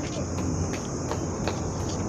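Steady high-pitched drone of cicadas, with a few faint footstep clicks.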